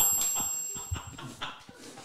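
People laughing, fading away, with a high ringing electronic tone (a sound effect) that starts suddenly at once and cuts off after about a second.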